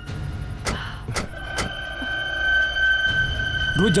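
Car doors clunking three times, about half a second apart, in the first two seconds as people get out of an SUV, over a steady high drone of background score.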